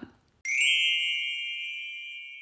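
A single bright bell-like ding struck once about half a second in, ringing on and slowly fading away.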